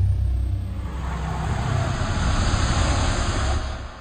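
A sound effect that starts suddenly: a deep steady rumble under a rush of noise that swells through the middle, then fades out near the end, like a jet passing.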